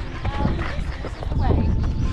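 Wind buffeting the microphone in a steady low rumble, with indistinct voices of people close by.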